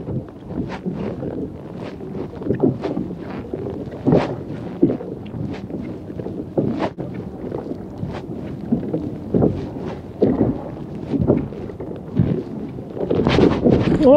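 Wind buffeting the microphone and choppy water slapping against a kayak, with irregular short knocks and rustles scattered throughout.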